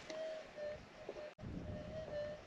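Metal detector's faint, steady threshold tone, a single mid-pitched hum that wavers in loudness and breaks off briefly just over a second in.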